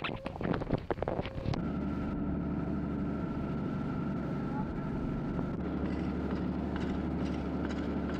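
Steady mechanical hum with several held tones, starting about a second and a half in after a short stretch of choppy sound.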